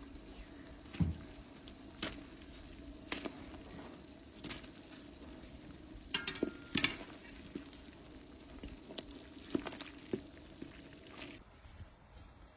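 Piloncillo syrup simmering in a stainless steel pot around egg-battered bread, a low steady bubbling. A metal spoon clinks against the pot about a dozen times as syrup is spooned over the pieces.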